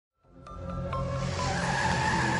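Car tire-squeal sound effect with music, fading in over about the first second and holding a steady high squeal.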